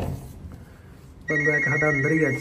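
An electronic ringtone-like melody with a steady high tone on top, starting about a second in after a quieter stretch and repeating in short phrases.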